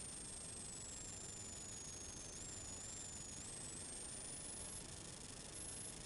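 Faint, steady hiss with no distinct event, and a thin high-pitched whine that drifts slowly up and down in pitch.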